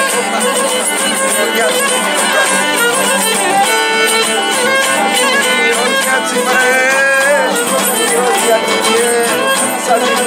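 Cretan lyra bowed in a lively traditional Cretan melody, with laouto accompaniment underneath.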